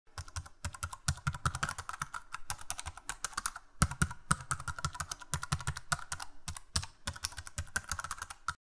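Rapid computer keyboard typing, a fast continuous run of key clicks, used as the sound effect for on-screen text being typed out.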